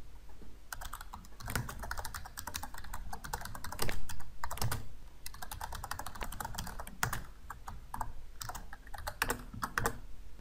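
Typing on a computer keyboard: a run of irregular keystroke clicks, loudest in a quick flurry about four seconds in, over a faint steady low hum.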